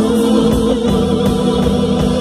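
A live progressive rock band playing an instrumental: a held, slightly wavering lead note sustains over bass, with regular cymbal strikes from the drum kit.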